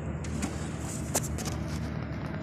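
A vehicle engine running with a steady low hum, with a sharp click a little over a second in.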